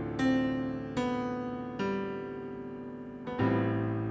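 Slow solo piano music: four chords struck about a second apart, each ringing out and fading before the next.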